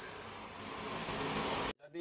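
Steady, even background hiss of room noise that cuts off suddenly near the end at an edit.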